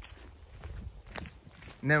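Footsteps on a forest floor covered in dry leaf litter, a few faint, irregular steps as someone walks.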